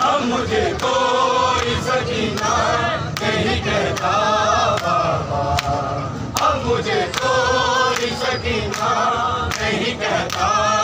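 A crowd of men chanting a noha, a Shia mourning lament for Hussain, together in unison, with regular sharp slaps roughly once a second from hands beating on chests in matam.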